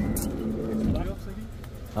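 Men's voices talking in the background over a steady low rumble, with a brief faint click near the start.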